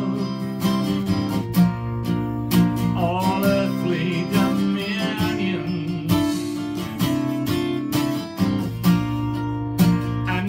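Acoustic guitar strummed in a steady rhythm of chords, an instrumental passage of a worship song.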